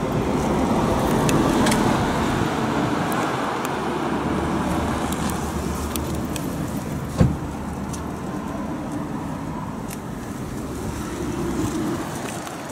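Steady road traffic noise that swells and fades, with a single sharp knock about seven seconds in.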